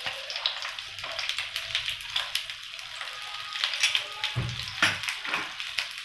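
Stuffed green chillies shallow-frying in hot oil, sizzling with a steady scatter of small crackles. A soft thump comes about four and a half seconds in.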